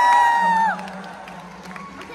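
A young woman's excited high-pitched squeal, held on one pitch and cutting off under a second in; quieter speech-like sound follows.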